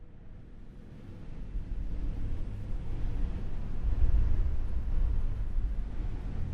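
A low, noisy rumble with no tune swells steadily louder over the first four seconds, then holds: a cinematic build-up in the video's soundtrack.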